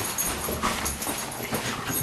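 A cockapoo worked up at a model helicopter, making agitated dog noises mixed with short clicks and scuffles.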